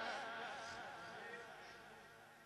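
The tail of a Quran reciter's long, wavering sung note, dying away steadily to a faint level.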